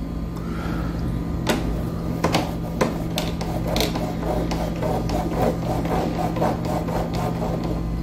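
A finger rubbing and scratching across the dust-clogged plastic filter screen of a window air conditioner, with light clicks and scrapes scattered through, over a steady low hum.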